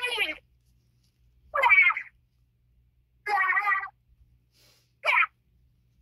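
A person's high-pitched voice in four short vocal bursts, about a second or more apart, with quiet between them.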